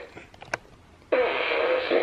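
Toy fart gun sounding through its small built-in speaker: after a brief lull and a single click, a steady pitched noise starts suddenly about a second in and holds.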